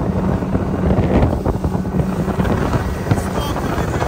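A 90 hp outboard motor running steadily at speed, driving a small open boat through the water while towing an inflatable tube, with wind buffeting the microphone.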